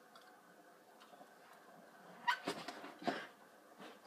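A quiet room, then a few short, high, voice-like cries about two and a half to three seconds in.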